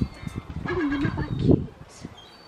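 A gull calling briefly, twice, over wind buffeting the microphone.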